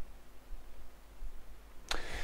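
Pause in a man's talk: quiet room tone with a faint low hum, then a sharp intake of breath near the end.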